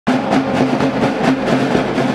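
A line of marching snare drums played together with sticks in a fast, steady rhythm.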